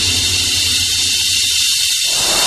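A loud, steady hiss of noise, strongest in the treble, serving as a transition effect in an electronic soundtrack; the bass underneath fades away partway through.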